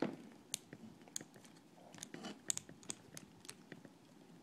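Faint scattered clicks and light metallic taps as a countersink cage and cutter are handled against an aluminum bar.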